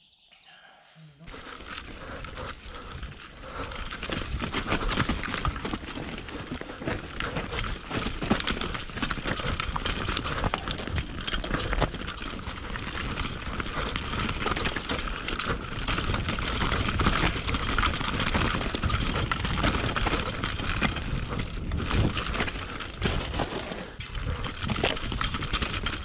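Specialized Enduro Evo mountain bike riding down a dirt downhill track, heard from a camera on the bike: a continuous rough rumble of tyres on dirt and leaves, with many small knocks and rattles over bumps, starting about a second in.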